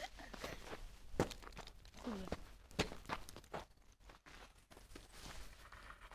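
Handling noise from a handheld camera rubbing against a zip-up jacket: scattered rustling with two sharp knocks, and a short vocal sound about two seconds in.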